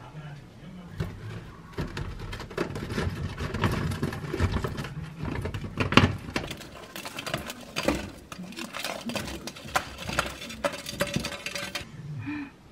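Baked sweet potato strips being picked and popped off a wire-mesh air fryer basket. There is a dense run of small clicks and rattles of the pieces and fingers against the metal mesh, with the loudest knock about halfway through.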